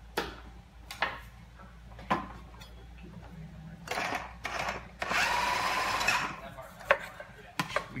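Electric food processor running in two bursts while shredding carrots: a short one about four seconds in, then a longer run of nearly two seconds with a steady motor whine. Before that come a few sharp knocks of a knife on a cutting board.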